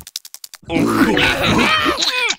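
Several cartoon characters laughing and vocalizing without words, starting just over half a second in, after a rapid run of faint clicks.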